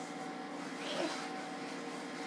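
Steady, low-level room hum and hiss with no distinct event, and a faint brief sound about a second in.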